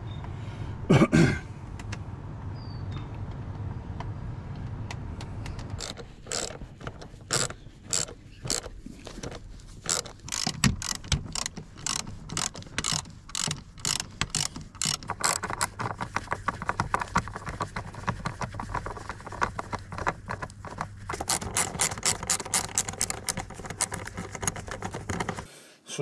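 Ratchet wrench clicking in runs as a seat-rail mounting bolt is tightened, the clicks coming fast near the end. A low steady hum and a single thump about a second in come before the ratcheting starts.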